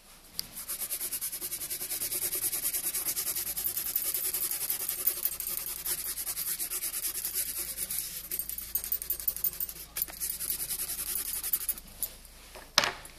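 Colored pencil scratching on paper in rapid back-and-forth shading strokes, several a second, with a short pause near the end.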